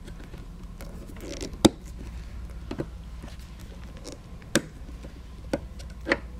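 Nippers cutting through a tough rubber trim rib on a seat frame: a few separate sharp snips and clicks, the loudest about a second and a half in, against a low hum.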